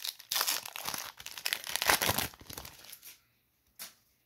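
The foil wrapper of a baseball card pack being torn open and crinkled: a dense crackle for about two seconds that tapers off, then a single short click near the end.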